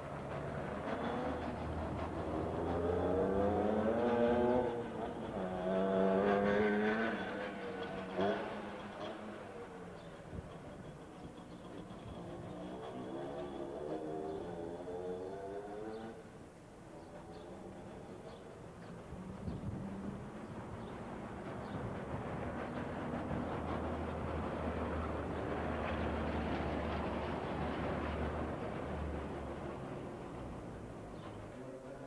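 A motor vehicle's engine accelerating close by, its pitch rising, dropping at a gear change and rising again. A second acceleration comes a few seconds later, and another vehicle swells and fades near the end.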